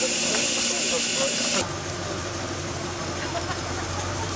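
Steam traction engine hissing steadily with escaping steam. The hiss cuts off suddenly about a second and a half in, leaving a quieter, low steady hum.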